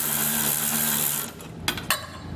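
Cordless electric ratchet running as it snugs down a U-bolt nut on the air helper spring bracket. It stops a little over a second in, followed by two short clicks.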